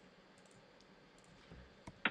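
Near silence with a few faint computer-mouse clicks, the loudest two near the end.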